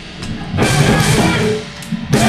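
Live mathcore band with electric guitars and drum kit playing a stop-start passage: a short break, a band hit of about a second, another brief break, then the full band comes crashing back in at the end.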